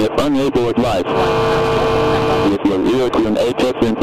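Steady drone of the Mooney M20E's engine and propeller in flight, heard through the cockpit intercom, with brief radio voice transmissions over it in the first second and again from about two and a half seconds in.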